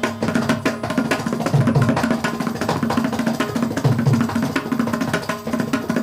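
A mridangam and a kanjira playing together in a Carnatic percussion passage. A dense run of sharp strokes is broken every second or two by the mridangam's deep bass strokes, over a steady drone.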